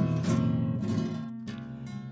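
Acoustic guitar strumming the accompaniment to a Mexican ranchera song between sung lines, the strums growing softer.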